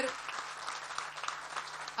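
Audience applauding: many hands clapping in a steady, dense patter during a pause in a speech.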